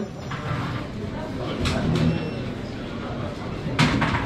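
Indistinct background voices over a steady room hum in a busy shop, with a few faint clicks. Near the end there is a sharp clack.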